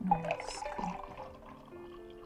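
A drink being poured into a glass, the liquid running mostly in the first second, over soft background music with long sustained notes.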